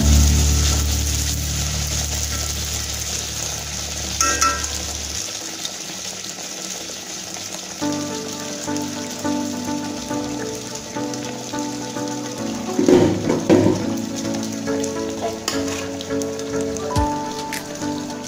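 Background instrumental music over the steady sizzle of rice-flour batter for tel pitha deep-frying in hot oil, with a denser burst of crackling about two-thirds of the way through.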